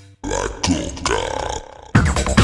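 Electronic dance track in a break: the beat stops, a brief gap, then a growling, warbling sampled sound with gliding pitch plays over it, fading down before the full beat comes back in at the very end.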